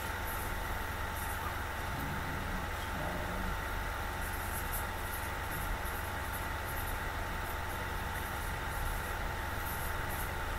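Steady background noise of a room recording with a thin, constant hum, and no other distinct event.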